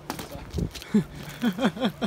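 A man's voice giving a few short, quick laughing syllables in the second half, after a brief low thump.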